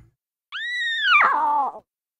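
A lion cub's small, high-pitched cartoon roar in a logo sting, answering the adult lion. It starts about half a second in as one squeal-like call that holds high and then slides down in pitch, lasting just over a second.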